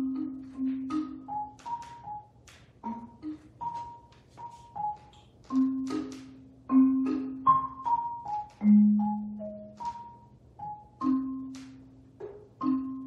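Prepared marimba, its bars fitted with small pieces of metal, plastic and rubber, played with four mallets. It sounds sparse single strokes and short clusters of notes at an uneven pace. Low notes ring on for a second or more, while higher notes are short.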